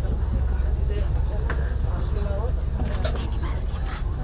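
Steady low rumble from a passenger ferry's engines heard inside the cabin, under indistinct voices of people nearby.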